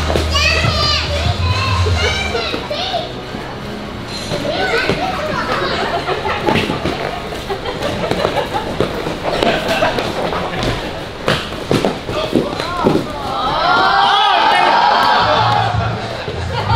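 Eskrima sticks striking during sparring: a scatter of sharp knocks and thuds, mostly in the middle stretch. High-pitched children's voices shout and chatter over them, loudest at the start and near the end.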